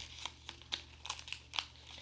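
Folded sheet of paper crinkling and rustling in the hands as it is creased and handled, a string of short crackles.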